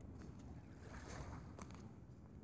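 Faint beach ambience: low wind rumble on the microphone and calm sea washing gently at the shore, with a light click near the end.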